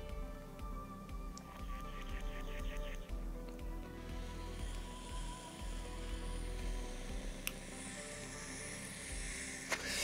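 Soft background music with steady held tones. From about halfway through, a long soft airy hiss as a Yocan wax vape pen is drawn on, its coil heating the live resin.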